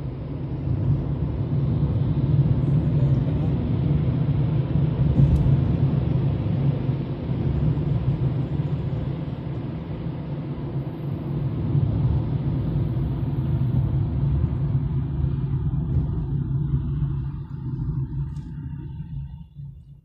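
Steady low rumble of a moving car heard from inside the cabin: tyre and engine noise while driving. It thins out over the last few seconds and cuts off at the end.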